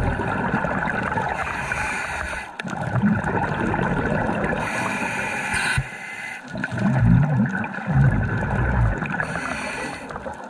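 Scuba diver breathing through a regulator underwater: a hissing inhale around the middle, then gurgling bursts of exhaled bubbles a second or two later.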